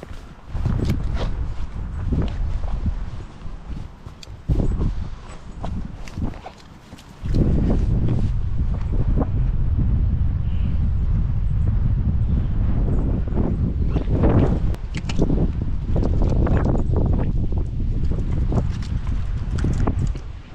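Footsteps and rustling from walking through grass and scrub, with wind buffeting the camera microphone; about seven seconds in, the wind rumble jumps up and stays loud and steady.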